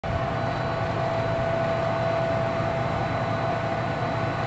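Aircraft machinery running on an airfield: a steady, unchanging drone with a constant high whine.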